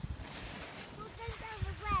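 Low wind rumble on the microphone, with a faint voice speaking softly in the last part.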